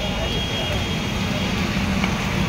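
Steady street noise: traffic rumble under background voices.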